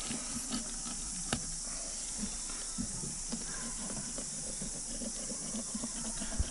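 Filleting knife working through a fish on a plastic cutting board, with faint scrapes and small taps and one sharper click about a second in, over a steady high hiss.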